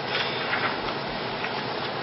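Steady room noise of a meeting room, with a few faint rustles and small knocks.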